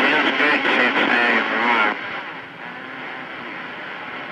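A voice heard over a CB radio's speaker for about two seconds, then the transmission drops and the receiver's steady static hiss takes over, noticeably quieter.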